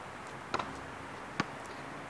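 A basketball coming down from a shot and bouncing on an outdoor asphalt court: two sharp, short impacts a little under a second apart over a faint steady outdoor background.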